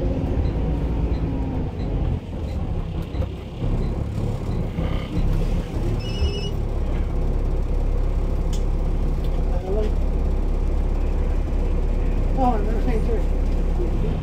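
Steady low rumble of a moving bus's engine and running gear heard from inside the passenger saloon. A short electronic beeping comes about six seconds in, and passengers' voices are heard in the background towards the end.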